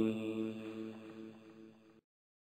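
The held closing note of a Quran recitation: a steady chanted tone with several overtones, drawn out by echo and fading gradually away to silence.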